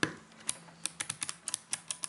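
Rapid, irregular clicking of clicky Kailh Choc low-profile key switches on a Dirtywave M8 as fingers press them firmly down, seating the newly fitted switches in their hot-swap sockets.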